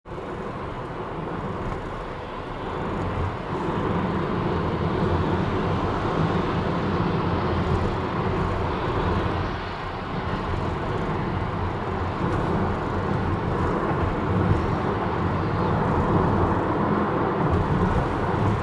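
Steady road and engine noise of a car driving at highway speed, heard from inside the cabin: a low rumble of tyres and engine that grows a little louder over the first few seconds.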